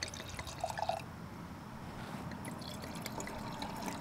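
Red wine being poured from a bottle into wine glasses: a faint trickle and splash of liquid filling the glass.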